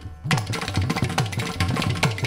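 Carnatic percussion led by the mridangam, playing a fast, dense run of strokes. The deep strokes bend in pitch. There is a brief lull at the very start before the run.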